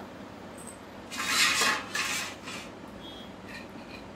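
Steel plates and bowls handled on a floor: a scraping rustle about a second in, a shorter one just after, then a light metallic clink.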